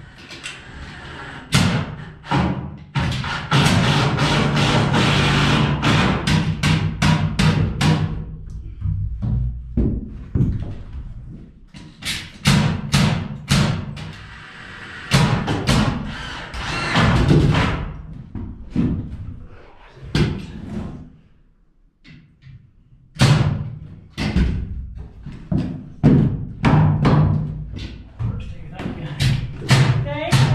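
Background music with a steady, even beat and a sustained low bass line, dropping out briefly about two-thirds of the way through.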